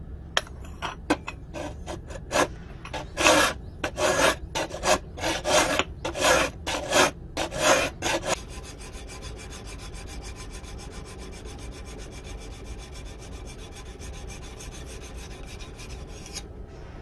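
Hand file scraping a steel knife blade clamped in a vise: loud, separate strokes about two a second for the first half. These give way about eight seconds in to a quieter, quicker, even rasping.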